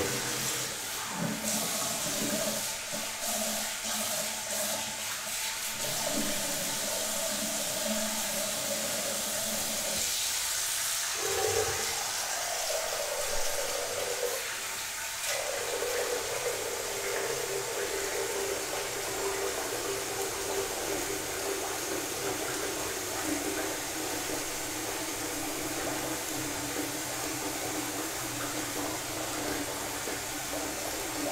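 Tap water running steadily into a bathroom sink, its pitch shifting a little about halfway through.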